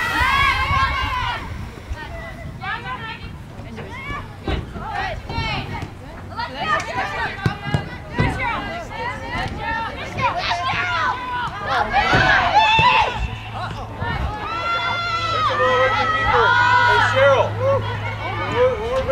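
Spectators and players shouting and calling out across a soccer field, many voices overlapping with no words clear, loudest in two bursts in the second half. A few sharp knocks, and a steady low hum in the second half.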